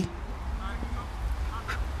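Faint, distant calls from football players on the pitch over a steady low rumble.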